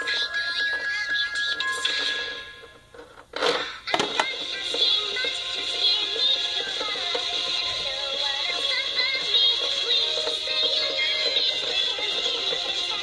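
A song with a singing voice plays as the soundtrack. It fades down a couple of seconds in and drops out almost completely, then comes back with a sharp hit about four seconds in and carries on.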